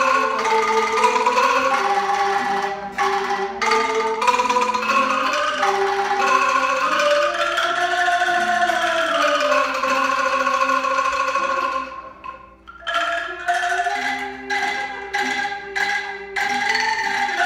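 Angklung ensemble playing a tune, the bamboo tubes shaken into held, rattling notes. The playing drops away briefly about twelve seconds in, then picks up again.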